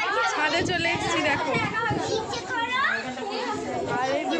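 Several people talking at once: the mixed chatter of a small group's voices.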